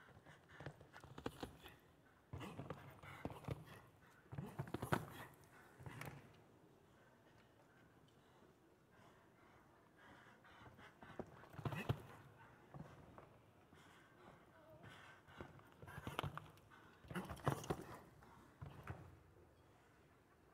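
A show jumper's hooves on the sand footing of an indoor arena, faint, coming in clusters of quick thuds with quieter stretches between as the horse canters and jumps the course.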